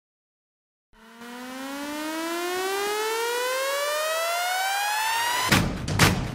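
About a second of dead silence, then a synthesized riser: one buzzy tone gliding steadily upward in pitch for about four and a half seconds. Near the end it gives way to loud electronic music with hard drum hits.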